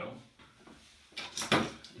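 A short clunk of something being handled, about one and a half seconds in, after a moment of near quiet.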